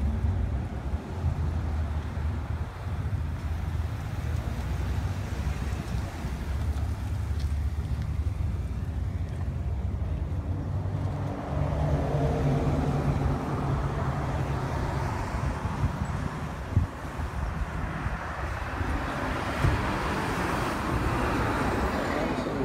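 Street traffic and the engine of a police car pulling in to the curb and idling, over a steady low wind rumble on the microphone. A short thud comes about 17 seconds in and a smaller knock near 20 seconds.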